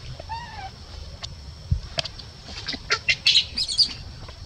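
Baby macaque calling while its mother holds it down: one short squeak that rises and falls about half a second in, then a flurry of shrill squeals near the end, the loudest part. A few sharp clicks fall in between.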